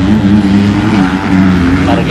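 Racing motorcycle engines running hard at fairly steady revs, one held pitch that wavers slightly.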